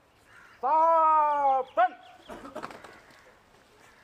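A man's drawn-out shouted drill command: one long held call falling slightly in pitch, cut off by a short clipped syllable. A brief burst of shuffling and clicking noise follows.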